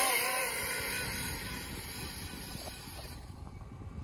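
A 1/7-scale RC car's motor whining hard under throttle as it climbs a sand dune, its pitch wavering and the sound fading steadily as the car pulls away up the slope. A high hiss with it drops away about three seconds in.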